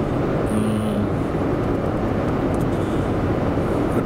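Steady road and engine noise heard from inside a moving car's cabin, with a brief low hum about half a second in.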